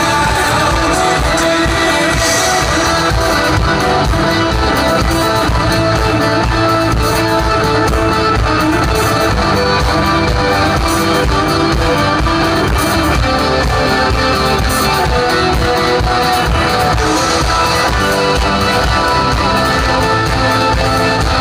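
Live rock band playing at steady full volume, with electric guitars over bass and drums, heard from the audience.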